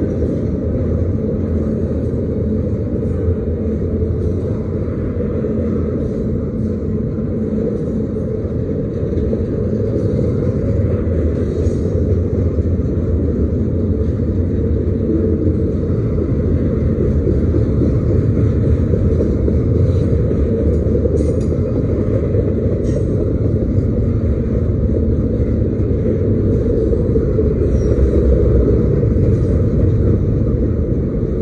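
Double-stack intermodal freight train's well cars rolling past close by: a loud, steady rumble of steel wheels on rail, with faint high ticks now and then.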